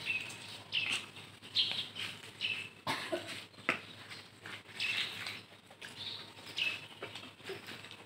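Small birds chirping now and then, short high calls at irregular intervals, over light rustling and faint taps.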